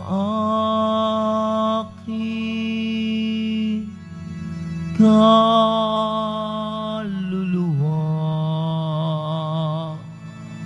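A slow hymn sung in long held notes, some with vibrato, in phrases about two seconds long separated by short breaths, over a steady sustained accompaniment.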